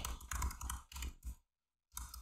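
Computer keyboard typing: a quick run of key clicks that stops a little over a second in.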